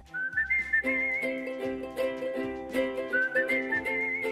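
Background music: a whistled melody over a plucked, ukulele-like string accompaniment. The whistled phrase rises near the start and repeats about three seconds in.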